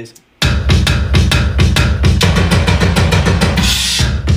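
A dark-sounding music beat playing back from a production session, starting about half a second in: heavy bass and drum-kit hits on a steady pulse, with a rising hiss near the end.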